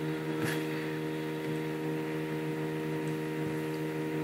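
Steady electrical hum made of several low, even tones, typical of mains hum picked up by the recording setup. A faint click comes about half a second in.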